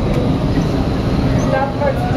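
Indoor skydiving wind tunnel's airflow, a loud, steady rush of air, with faint voices underneath.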